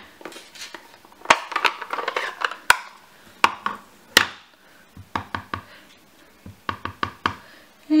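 Sharp clicks and knocks of plastic craft supplies being handled: an ink pad's hinged plastic case opened and set down on the work mat. From about five seconds in comes a run of quick taps as a blending brush is dabbed onto the ink pad.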